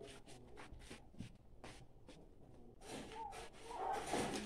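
Faint, light clicks and scuffs at an irregular pace: footsteps in flip-flops on a concrete floor.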